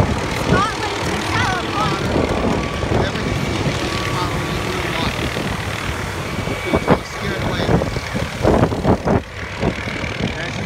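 A helicopter hovering low over the water, its rotor and engine running steadily under the outdoor noise. Irregular low thumps come near the end.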